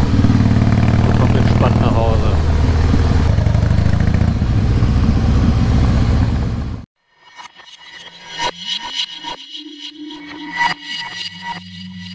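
Harley-Davidson Heritage Softail Classic's V-twin engine running steadily under way, with wind noise, cutting off abruptly about seven seconds in. After the cut come quieter glitchy electronic effects: crackles and clicks, a brief gliding tone, then a low steady hum near the end.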